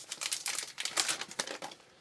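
Crinkling and rustling of a trading-card pack wrapper and cards being handled, a dense run of small crackles that stops just before the end.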